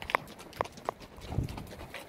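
Horse hooves walking on a stony trail: a few sharp clicks about a third of a second apart, then a duller knock a little past the middle.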